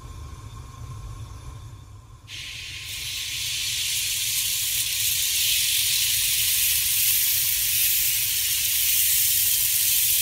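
Batter hitting a hot non-stick frying pan and sizzling: a steady hiss that starts suddenly about two seconds in and holds.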